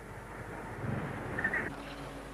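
A motorcycle engine running quietly under steady outdoor street noise.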